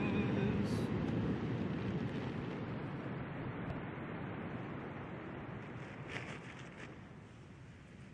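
Wind on the microphone, a steady rushing noise that slowly dies away.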